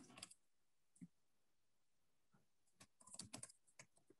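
Faint computer keyboard typing: scattered key clicks, a short run at the start, a single one about a second in, and a quicker cluster near the end.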